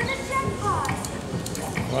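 Slot machine's electronic feature jingle as its jackpot bonus round is triggered: held synthetic tones followed by a short gliding note, over background chatter.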